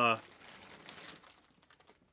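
Plastic packaging crinkling faintly as it is handled, fading out about a second and a half in.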